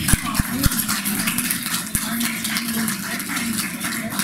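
Light, scattered applause from a small gathering, with a few dull bumps in the first second.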